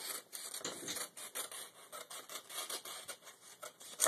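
Scissors cutting through a sheet of computer paper: a string of short, irregular snips as the blades work along the cut.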